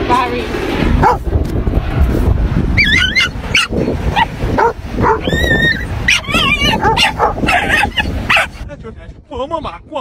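A dog whining and yipping in short, high-pitched calls, one held a little longer, over a steady low rumble. Near the end the calls give way to a person's voice.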